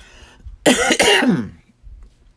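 A person coughs to clear their throat: one loud, rough burst about half a second in, lasting under a second, with a short breath in just before it.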